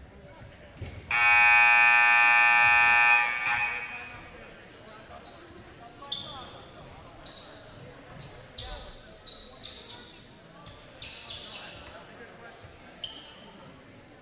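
Gym scoreboard horn sounds once, a steady buzzing blast of about two seconds, about a second in. Afterwards sneakers squeak on the hardwood court and a basketball bounces.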